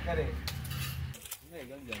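A few sharp metallic clinks and knocks of hand tools at work, about half a second and a second in.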